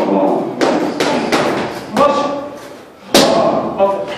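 Kicks and punches landing on Thai pads: a run of about five sharp thuds, the loudest a little past three seconds in.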